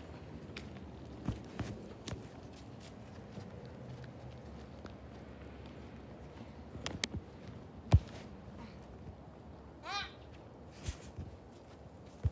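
Scattered footsteps and handling bumps on a tablet being carried outdoors, with one sharp knock about eight seconds in and a short, rising high-pitched vocal sound about ten seconds in.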